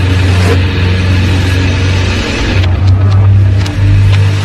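Sludge metal: heavily distorted guitar and bass holding a loud, low, sustained droning note.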